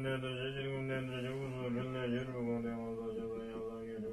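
A chanted mantra: a low voice holding long, steady notes over a drone, moving to a new pitch about two seconds in.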